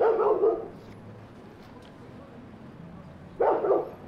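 A dog barking in two short bouts, one right at the start and one near the end.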